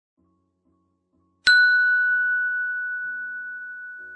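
A single bell-like ding about one and a half seconds in: one clear high tone that rings on and fades slowly.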